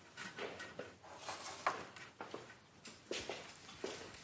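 Soft footsteps across a floor, about two steps a second, amid faint room tone.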